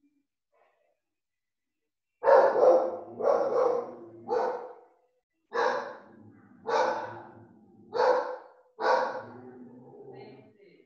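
A dog barking, seven loud single barks about one a second, starting about two seconds in.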